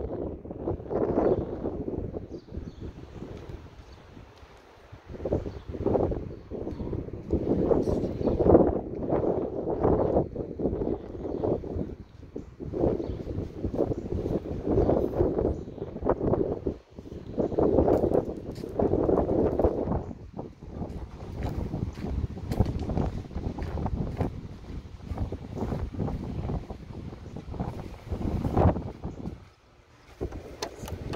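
Wind buffeting the phone's microphone in uneven gusts that swell and drop every second or two.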